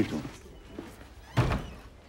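A door shutting with a single heavy thunk about a second and a half in.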